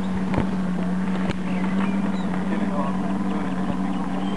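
Engine of a radio-controlled model airplane droning steadily at a constant pitch as it flies overhead.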